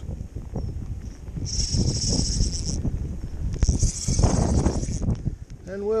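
Wind buffeting the microphone in a low rumble, with two stretches of high hiss of a second or so each, about one and a half and three and a half seconds in.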